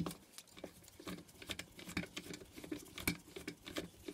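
Screwdriver working a small bolt loose inside the burner housing of a Chinese 2 kW diesel night heater: a run of faint, irregular small clicks and scratches.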